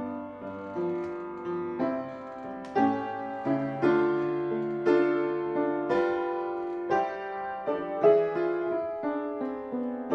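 Solo piano playing a slow hymn, full chords struck about once a second and left to ring.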